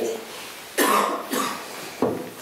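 A person coughing twice: a sharp cough about a second in, followed closely by a weaker one.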